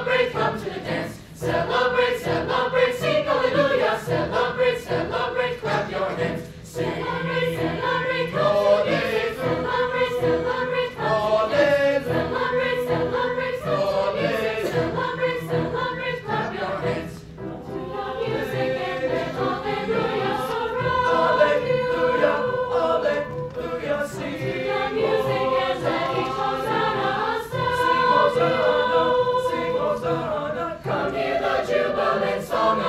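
Mixed choir of male and female voices singing, with sustained notes in phrases broken by short pauses.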